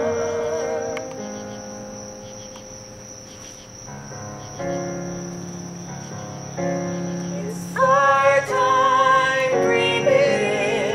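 Musical-theatre duet sung live with accompaniment. A held vibrato note fades near the start into quieter sustained accompaniment chords, and a voice comes back in about eight seconds in with a long, loud vibrato note. A steady high chirring of crickets runs underneath.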